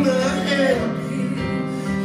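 Live soul-pop song: sustained keyboard chords with a sung vocal line over them in the first second.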